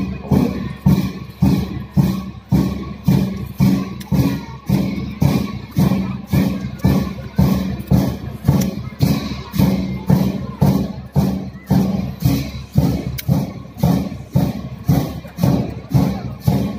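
Tibetan Buddhist monastic drum and cymbals beaten at a steady pulse of about two strokes a second, the accompaniment to a masked cham dance.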